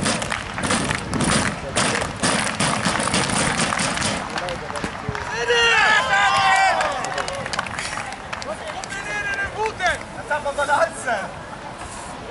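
Spectators clapping in a steady rhythm for the first few seconds, then voices calling out and cheering around the middle, with laughter near the end.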